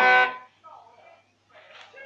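Hmong qeej, a free-reed bamboo-style mouth organ, sounding a loud chord of several steady reed tones that cuts off less than half a second in. Faint voices follow.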